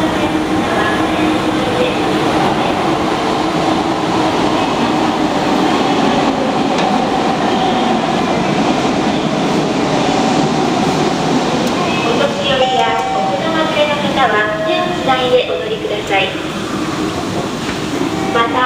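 Steady machine hum of escalators in an underground railway station, with a few held tones running through it. From about twelve seconds in, a recorded voice announcement plays over it, asking riders not to stop where they step off the escalator.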